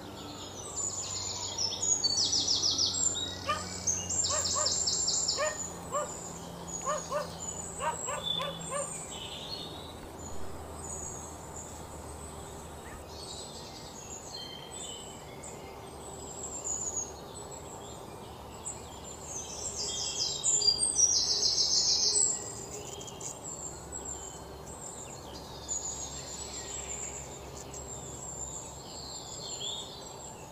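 Birds calling outdoors, with scattered chirps and two bursts of rapid, high-pitched trills: one in the first few seconds and one about twenty seconds in.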